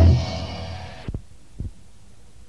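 The last chord of a death/doom metal song, heavy distorted guitar and bass, fading out over about a second, followed by two short low thumps and then faint hiss from the cassette demo recording.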